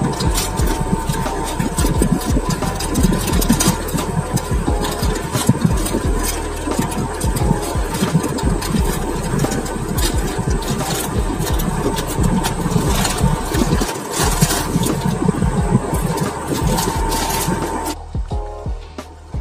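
Plastic courier mailer bag being torn open and crinkled by hand close to the microphone: a dense, irregular crackling with low handling rumble underneath.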